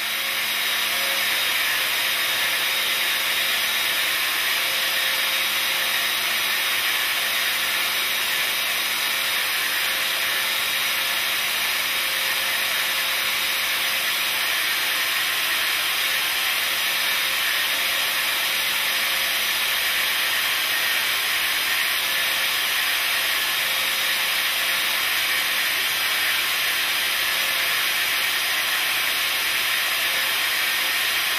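Pneumatic air motor driving a split-frame clamshell pipe cutter as its tool bit cuts into a steel pipe. It makes a steady hissing whirr that builds up over about the first second and then holds level.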